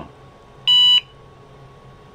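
IBM PS/2 Model 30 system speaker giving one short beep about two-thirds of a second in.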